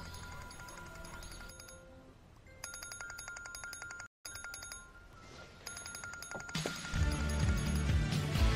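A trilling electronic ringtone sounds in two bursts of about a second each, with a pause between, over soft background music. The music then swells louder near the end.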